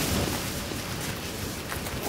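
A steady rushing noise with a low rumble, slowly fading.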